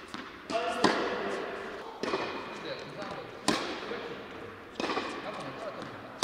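Tennis balls struck with rackets and bouncing on an indoor court, echoing in a large hall. Sharp hits come about a second in and, loudest, about three and a half seconds in, with softer ones around two and five seconds.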